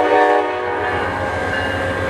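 Diesel locomotive horn sounding a steady multi-note chord that cuts off about a second in, over the low rumble of a train rolling past.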